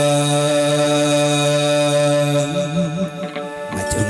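Chầu văn ritual singing: a singer holds one long, steady note, then breaks into a wavering ornament about two and a half seconds in. A few sharp clicks come near the end.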